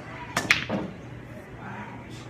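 Pool shot: the cue tip strikes the cue ball, and a split second later the cue ball clacks into an object ball, two sharp clicks close together, the second the louder.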